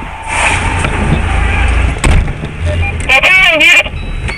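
Car driving at speed: a steady rush of engine and road noise, broken by a sharp click about two seconds in. A man's voice speaks briefly near the end.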